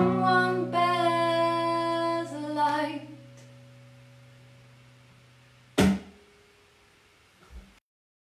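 Acoustic guitar's final strummed chord ringing out under a woman's long held sung note, which ends about three seconds in. The chord fades away until a single sharp knock near six seconds, where the ringing stops.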